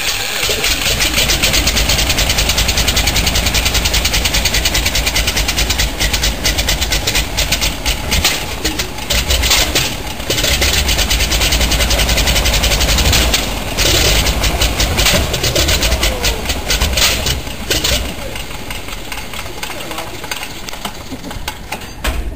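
Pratt & Whitney R-985 Wasp Jr. nine-cylinder radial engine catching about half a second in and running with rapid firing pulses and propeller noise, after its magneto timing was corrected following a backfire. The sound drops markedly about eighteen seconds in.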